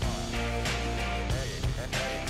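Outro background music: an instrumental track with a steady, repeating beat and bass line.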